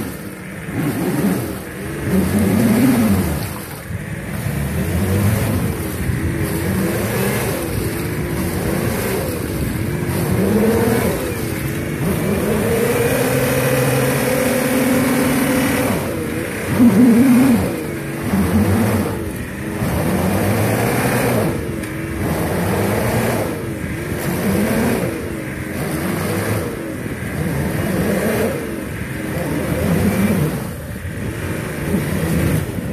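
A 4x4 SUV's engine revved over and over in low-range 4L while the vehicle is stuck in mud, the revs rising and dropping every couple of seconds, with one longer, higher rev held for a few seconds near the middle.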